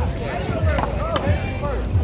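Paddleball rally: a rubber ball smacking off paddles and the concrete wall, a few sharp hits about a second apart, over a steady low rumble.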